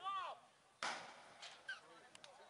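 Short shouted calls from players or spectators, with one sharp smack about a second in.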